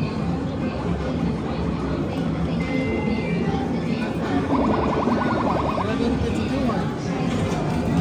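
Busy arcade ambience: game-machine music and background voices, with a short electronic buzz about halfway through.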